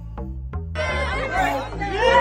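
Dance music with a steady bass line and a couple of sharp percussive hits. From about a second in, many voices chatter over it.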